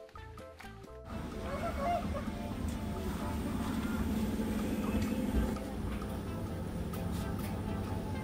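Background music with clear notes, which cuts off about a second in. It is replaced by the steady noise and low hum of a coin laundry room with a row of washing machines.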